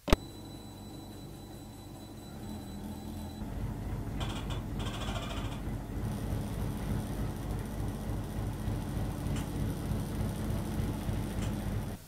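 A sharp click, then a whole-body vibration plate machine running with a steady low hum and rattle that grows louder about three and a half seconds in.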